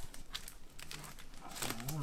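LP record sleeves being flicked through in a shelf: quick light clicks and rustles of cardboard jackets sliding against each other. A man's drawn-out voice comes in near the end.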